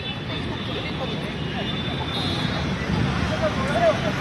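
Steady outdoor street noise: vehicle traffic, with faint scattered voices from a gathered group.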